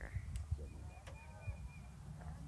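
Faint distant voices over a low, steady rumble of wind on the microphone.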